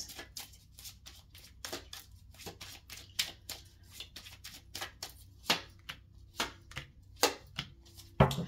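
Tarot cards being shuffled and handled: a run of quick, soft card flicks and riffles, with a few louder snaps spread through.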